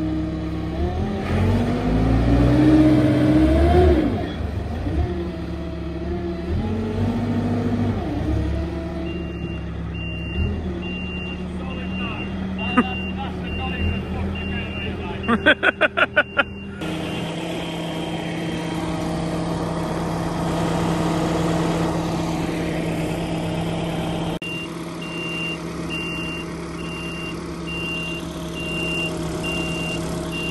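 Telehandler's diesel engine revving up under load, then running steadily while its reversing alarm beeps in an even series of pulses. A quick run of sharp clicks comes about halfway.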